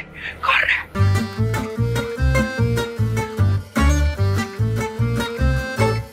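Upbeat background music with plucked strings over a bouncy bass beat of about two to three notes a second. It starts about a second in, after a brief voice.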